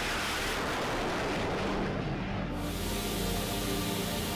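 Steady rushing noise of the X-47B's Pratt & Whitney F100-PW-220U jet engine running, with faint background music underneath.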